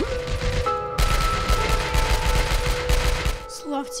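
Rapid automatic rifle fire in a long, dense volley, loudest from about a second in, over sustained music notes. The gunfire cuts off suddenly shortly before the end.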